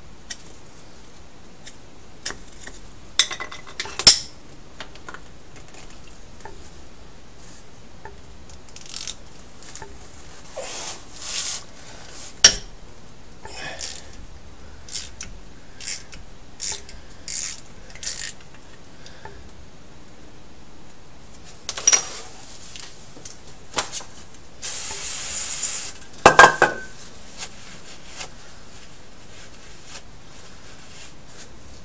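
Hand tools on the fill plug of a GM 14-bolt rear axle: scattered light metal clinks and a few sharp knocks as a 3/8 plug socket and extension are worked into the plug and tapped against the axle housing. Near the end comes a short hiss, then a ringing metal clink.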